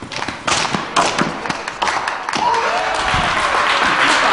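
A few sharp thuds, then onlookers clapping and cheering, building from about halfway through.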